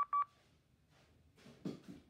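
Two short, high electronic beeps in quick succession, heard in a recorded phone call played back through a smartphone's speaker.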